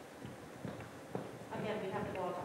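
Two sharp knocks around the middle, then quiet talking that starts near the end.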